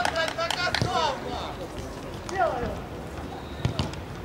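Players shouting during a small-sided football match, with the shouts mostly in the first second and again briefly past the middle. Several sharp knocks, typical of a football being kicked, come near the start and again a little before the end.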